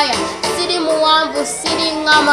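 A young girl singing one drawn-out melodic phrase, her pitch sliding down and back up.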